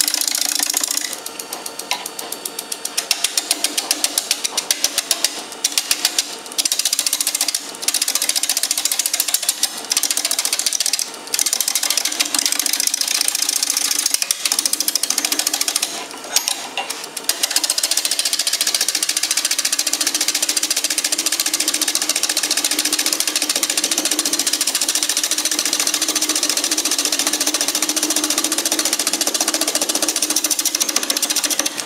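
Wooden bowl blank spinning on a Delta wood lathe while a hand-held turning tool cuts into it: a loud, fast, regular rattling scrape. It breaks off briefly several times in the first half as the tool comes off the wood, then runs on steadily.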